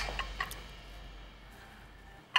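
Quiet studio room tone with a low hum, and a few faint ticks in the first half second.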